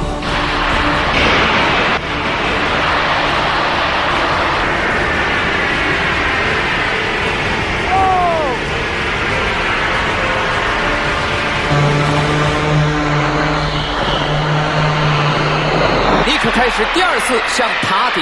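Go Fast jetpack firing its thrust, a loud steady rushing hiss as the pilot lifts off and climbs; it thins out near the end.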